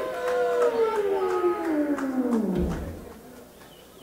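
Electronic synthesizer tones, a chord of several pitches, sliding steadily down in pitch for about two and a half seconds. They end in a brief low rumble, then fall away to a quieter hiss: a segue effect between songs.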